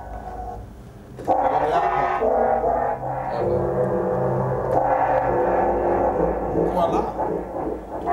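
Synthesizer sounds played from a keyboard: after a quieter first second, sustained chords ring out, shifting to new chords every couple of seconds.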